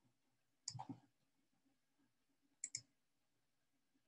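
Computer mouse clicking in near silence: a few clicks just under a second in, then a quick double click later on.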